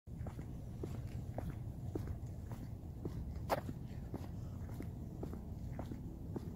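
Footsteps of a person walking outdoors at about two steps a second, over a steady low rumble, with one louder sharp click about midway.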